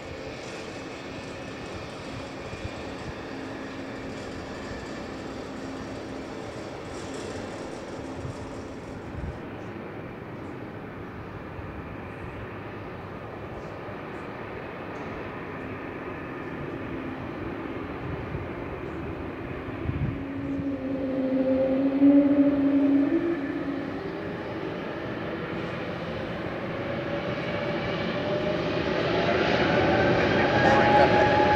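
Cessna UC-35D Citation Encore's twin turbofan engines at taxi power: a steady jet hum as the aircraft rolls along the taxiway. A louder tone swells about twenty seconds in, and near the end the whine rises in pitch and grows louder as the jet comes toward the listener.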